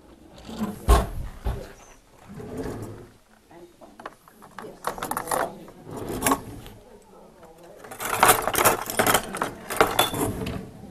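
Kitchen work sounds: a sharp knock about a second in, then scattered knocks and clinks of utensils and containers, with voices in the room.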